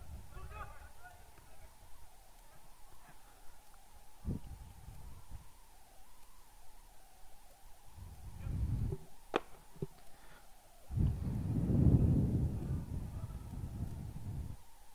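Low rumbling on an open microphone, strongest a little after eleven seconds, with one sharp knock about nine seconds in and faint distant voices.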